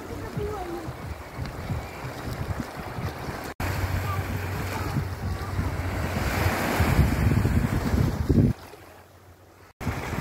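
Wind buffeting the phone's microphone over small waves washing up on the shore. The sound drops out abruptly about a third of the way in and again near the end, with a quieter stretch just before the second dropout.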